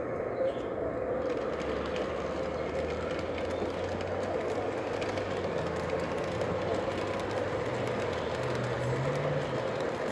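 O gauge model diesel passenger train running along the track: a steady hum of the locomotive's motors with the rumble of the wheels on the rails.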